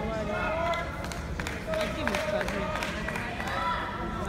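Indistinct voices of several people talking across a large hall, with a few sharp ticks in the background.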